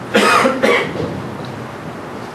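A man clearing his throat with two short coughs into a handheld microphone, the second following close on the first.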